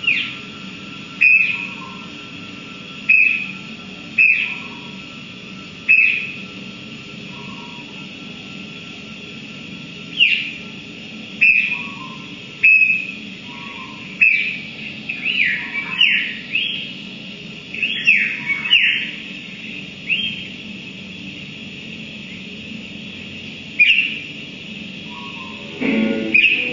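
Bird-like electronic chirps played through guitar amplifiers. Each is a short whistle that slides down in pitch and holds briefly, over a steady low hum. They come singly every second or few seconds, bunching into a quicker flurry in the middle.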